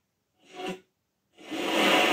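Blaupunkt CLR 180 clock radio's FM sound cutting in and out while it is being tuned: a short burst of broadcast sound about half a second in, then a longer one from about halfway, with dead silent gaps between.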